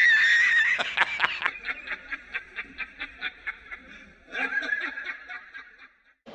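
A man laughing hard in a high, wheezing voice: a long squealing note, then a run of quick short chuckles, then another squealing note near the end.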